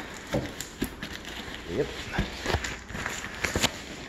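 Cardboard shipping box being handled while a missed strip of packing tape is cut free: several sharp knocks and crackles of cardboard and tape, scattered through the moment.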